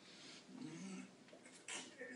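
Faint wordless voice sounds from a person, then a brief sharp rustle of paper slips being set down on a table near the end.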